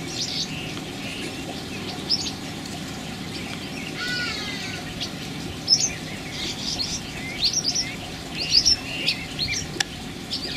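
White-fronted bee-eater calling: short, sharp, high chirps at irregular intervals, coming more often in the second half, with a brief wavering phrase about four seconds in. A steady low rumble runs underneath.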